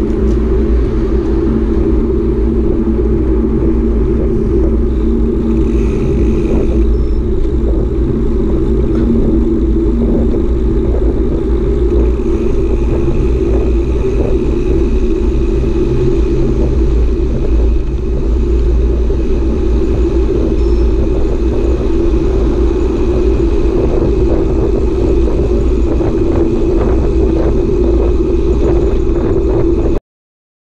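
Steady low wind rumble and tyre noise on a camera riding along on a bicycle at speed.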